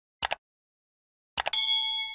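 Subscribe-button animation sound effect: a quick double mouse click, then about a second later another pair of clicks followed by a bright bell ding that keeps ringing.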